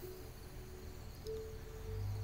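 Faint background music: a held note that fades early, then another steady held note coming in a little over a second in, over a low hum.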